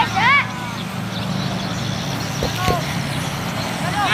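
Footballers' short shouted calls across the pitch, one right at the start and another at the end, with a couple of brief knocks around the middle, over a steady low engine-like hum.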